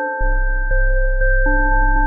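Electronic IDM music: clean, pure synth tones stepping through a repeating melody. A deep bass line comes in just after the start and pulses about twice a second.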